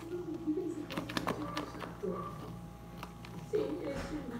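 A few clicks and scrapes as a spatula scoops whipped topping out of a plastic mixing bowl, with most of the clicks about a second in. A faint voice carries on in the background.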